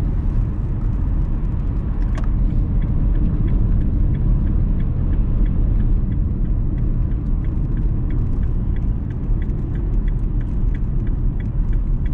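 Steady low rumble of a car's engine and tyres heard inside the cabin while it drives at road speed. From about two seconds in there is a faint regular ticking, about two ticks a second.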